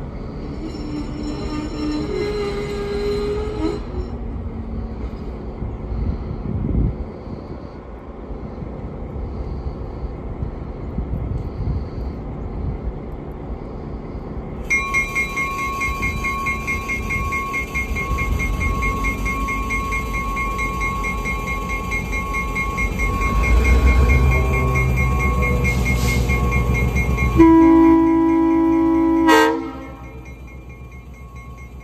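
A diesel locomotive approaches a grade crossing. Its engine rumble grows louder, and its bell rings steadily from about halfway through. Near the end the locomotive's air horn gives a blast of about two seconds, the loudest sound, and then cuts off.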